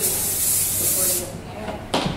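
Hairspray sprayed in one continuous hiss of just over a second, followed near the end by a short knock as the can is set down on the table.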